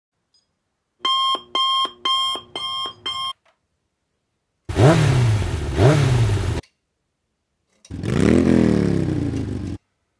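Alarm clock beeping five times in quick succession, then a motorcycle engine revving: two quick blips, each rising and dropping in pitch, and then a longer rev that falls away.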